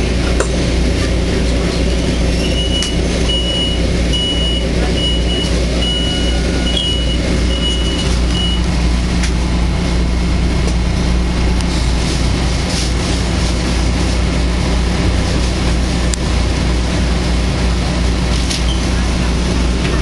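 Steady low hum of a stopped Metro-North electric commuter train, heard from inside the passenger car. A few seconds in comes a run of about eight short high beeps, evenly spaced.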